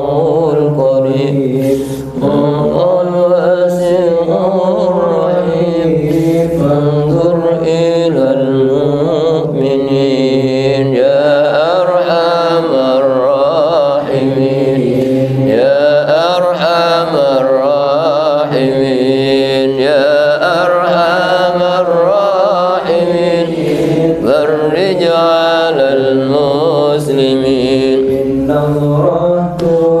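Islamic devotional chanting: a voice holds long, wavering notes without a break.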